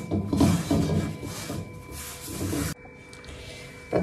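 Cotton cloth rubbing and wiping around the inside of a cast iron kadai to dry it after washing, a rustling scrub that cuts off abruptly about three seconds in.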